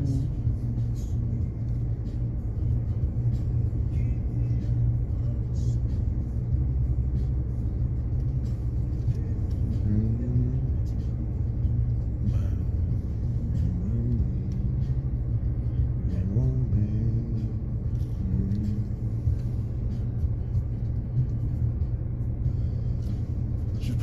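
Steady low rumble inside a stationary car: the engine idling. A few brief, faint voice sounds come over it now and then.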